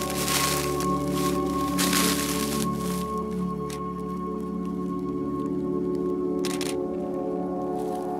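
Background music of sustained, held tones, with frozen leaves crunching underfoot in several bursts during the first three seconds and once more briefly about six and a half seconds in.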